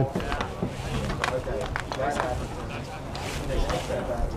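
Background voices of players and spectators calling and chattering around an outdoor baseball field, with a few brief sharp sounds.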